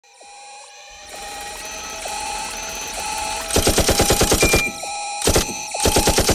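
Instrumental intro of a hip hop track: sustained synth chords swell up from near silence, then from about halfway in, rapid stuttering hits, about ten a second, come in short runs with brief breaks.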